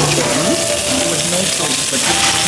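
Meat sizzling steadily on a hot tabletop grill plate at a Korean barbecue, with voices in the background.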